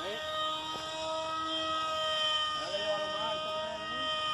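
Electric motor and 5-inch propeller of a small RC jet model in flight: a 2200 kV brushless motor giving a steady high whine that shifts only slightly in pitch.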